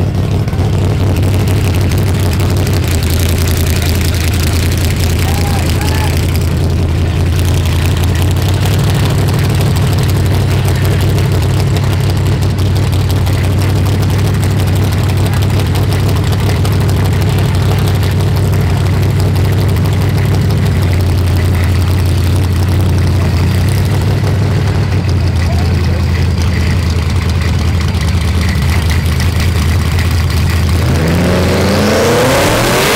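A street-race car's engine idling with a steady deep rumble.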